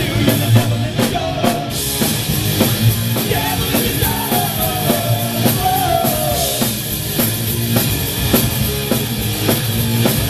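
Rock band playing live: a drum kit keeps a steady beat under electric guitar and bass, and a woman sings a couple of melodic phrases in the first two-thirds, dropping out near the end.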